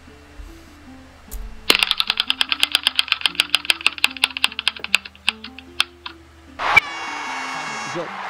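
Online spinning name-picker wheel ticking as it spins, the clicks rapid at first and slowing as the wheel winds down, then a bright held tone sounding as it stops on a name. Soft background music plays underneath.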